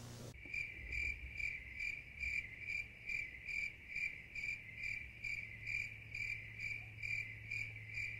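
A cricket chirping steadily and evenly, about two chirps a second, starting abruptly just after the start.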